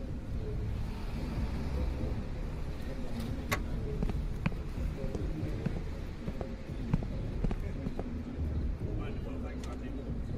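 Opening of a music video playing back: a steady low rumble with scattered sharp clicks and a muffled voice, before any beat comes in.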